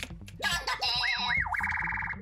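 Cartoon-style boing sound effect from the Makey Makey conductivity tester program on the laptop. It starts about half a second in, wobbles up and down twice, then goes into a buzzy held tone. It plays because the pencil-graphite drawing bridges the two foil strips and completes the circuit.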